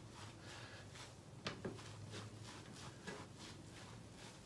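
Faint soft rubbing and squishing of a damp sponge being pressed and rolled over a screen on wet paper pulp to push the water out, with a light tap about one and a half seconds in and a weaker one about three seconds in.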